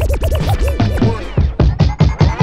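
Record scratching in a music track: a turntable scratch sweeping up and down in pitch several times a second over a bass line.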